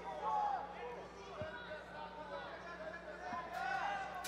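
Several voices calling out at once, overlapping and indistinct, over a low steady hum, with a few faint knocks.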